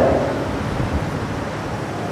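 Steady, even background hiss with no distinct events, as the echo of a man's voice dies away at the start.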